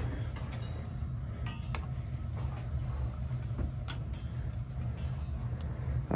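Hot-water heating circulator pump running with a steady low hum, with a few light clicks of handling on the pipes over it.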